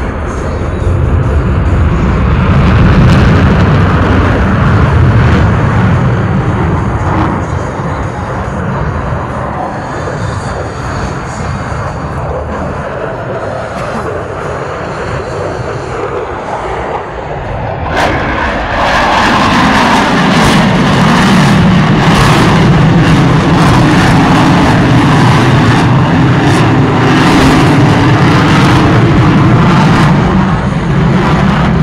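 Fighter jet's engines during an airshow demonstration pass: a loud steady rushing roar that eases for a while, then swells sharply a little past halfway as the jet comes close, and stays loud.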